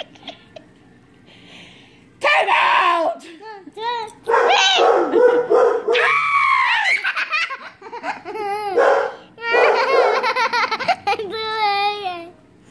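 A young child laughing loudly and shrieking in high, wavering bursts. They begin about two seconds in, after a quiet stretch with a few faint clicks.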